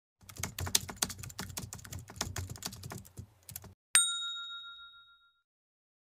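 Typing sound effect: rapid key clicks for about three and a half seconds, then a single bell ding that rings out for over a second.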